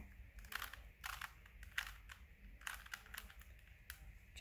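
A plastic 3x3 Rubik's cube being turned by hand, its layers giving a string of faint clicks, about six in four seconds.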